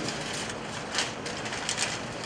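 A few short, soft clicks and knocks from people moving and handling things at a lectern, about a second in and twice near the end, over a steady low room hum.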